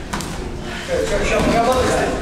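A man's voice calling out in a large, echoing hall from about a second in, with a couple of short knocks from the bout.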